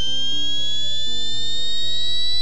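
Simulated electric vehicle motor whine played back from a vibro-acoustic NVH analysis: several high tones rising slowly together in pitch as the motor runs up in speed. Background music with low stepping notes plays underneath.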